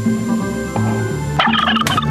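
Turkey gobbling, a quick warbling call about a second and a half in, over low sustained tones.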